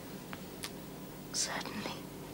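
Quiet close-up mouth sounds: two faint lip clicks of a kiss on the forehead, then a soft breath about one and a half seconds in, over a low steady hum.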